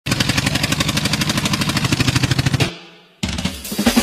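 Recorded dance track opening with a fast, even drum roll that fades out about two and a half seconds in. After a brief silence the music starts again abruptly and builds.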